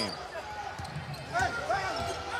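A basketball being dribbled on a hardwood court, with the sharp bounces carrying over the murmur of an arena crowd.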